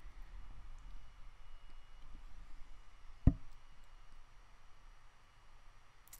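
Quiet room tone with a faint low hum, broken by a single short dull knock about halfway through.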